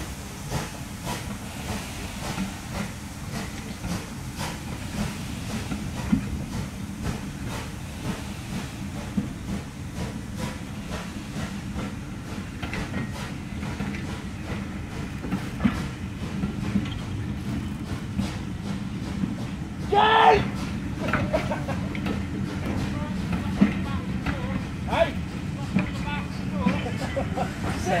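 A heavy train of passenger coaches rolling slowly past, with a steady low rumble and wheels clicking over the rail joints. About twenty seconds in there is one brief high sound that rises in pitch.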